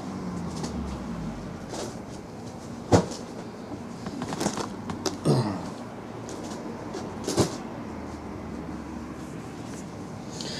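A few sharp knocks and softer thumps of sealed cardboard hobby boxes being moved and set down on a table, over a steady room hum. The loudest knock comes about three seconds in and another near the end.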